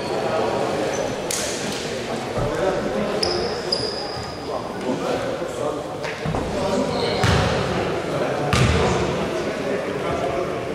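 A basketball bouncing a few separate times on a wooden gym floor, with a couple of short high squeaks and indistinct voices echoing around the hall.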